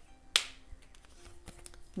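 A single sharp snap about a third of a second in, from oracle cards being handled: a card flicked or snapped against the deck.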